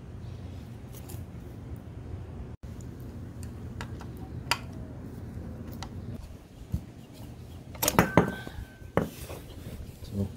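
Metallic clicks and clinks as a rubber coolant hose with a worm-drive clamp is worked off a motorcycle engine's water pump by hand. A few light clicks come about four seconds in and a louder cluster of clinks near the end, over a steady low hum.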